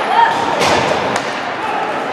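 Ice hockey play in an indoor rink: a couple of sharp knocks of stick and puck against the ice or boards, over a steady hum of spectators' chatter and a brief shout.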